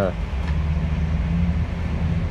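Steady low rumble of car engines and traffic, with cars driving past close by.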